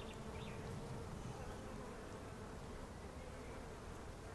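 Faint, steady buzz of a flying insect, holding one pitch.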